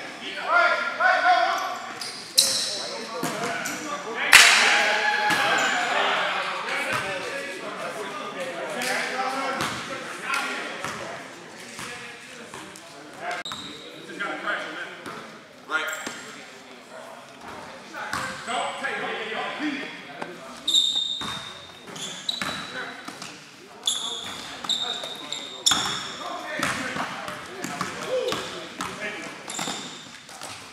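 Basketball bouncing and players' shoes and bodies knocking on a hard gym court during a pickup game, with scattered shouts from the players. A sharp bang about four seconds in is the loudest sound.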